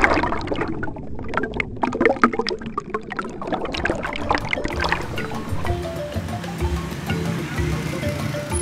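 Underwater bubbling sound effect over music: many small bubble pops and gurgles for about five seconds, then music alone.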